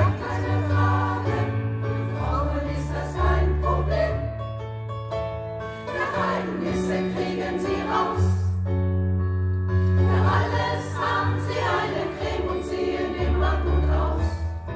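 Women's choir singing a German song to an electric keyboard accompaniment that has sustained bass notes underneath.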